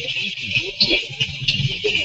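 A man's voice talking over a video-call line, with a steady high hiss behind it.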